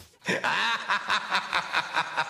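A long laugh, a steady run of 'ha' pulses about five a second, starting just after a brief silence.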